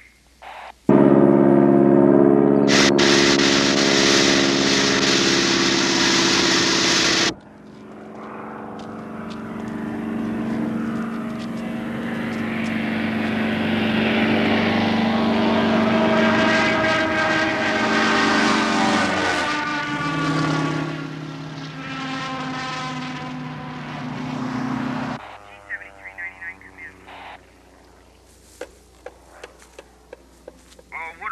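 A crop-spraying biplane's propeller engine flying low overhead. A loud steady engine note starts abruptly about a second in and cuts off sharply near seven seconds. The engine then swells again as the plane approaches, drops in pitch as it passes, and fades away.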